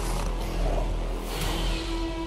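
Film trailer soundtrack of dramatic score and sound effects over a deep rumble. A whoosh swells about one and a half seconds in and leads into a steady held low note near the end.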